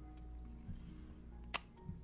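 Faint background music of soft held notes that step from one pitch to another, with a single sharp click about one and a half seconds in.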